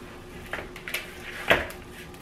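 Raw pork chops being turned over by hand in a glass mixing bowl: soft handling sounds with a few light knocks, the sharpest about one and a half seconds in.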